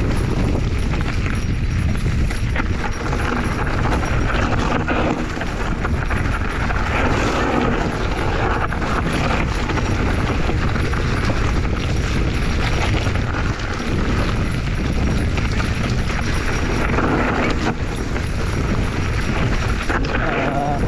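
Mountain bike rolling fast down a rocky dirt singletrack: tyres crunching over dirt and stones, and the bike and its handlebar bags rattling with each bump, under a steady rumble of wind on the helmet microphone.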